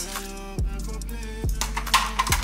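Background music with held chords and a deep kick drum beating about once a second.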